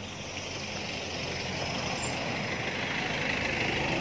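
A motor vehicle approaching on the road, its engine and tyre noise growing steadily louder.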